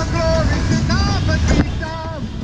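Low rumble of wind and tyres from a bicycle riding on a wet street, with a voice chanting a devotional kirtan over it in short notes that rise and fall. A sharp click about one and a half seconds in.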